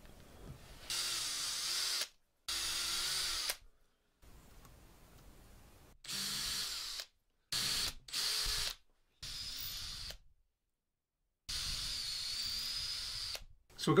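Makita cordless drill boring the bridge and string-through holes in a walnut guitar body. It runs in about seven short bursts with a slightly wavering whine, each cut off suddenly.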